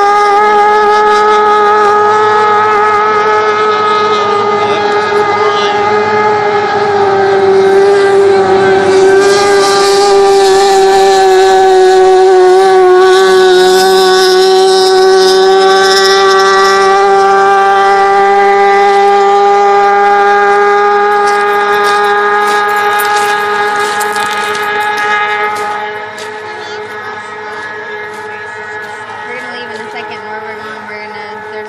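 Racing hydroplane engine running at high speed: a loud, steady high-pitched whine with a slight wobble in pitch. It drops off sharply near the end as the boat runs away.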